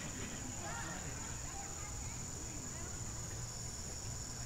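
Faint, steady high trill of crickets over a low background rumble.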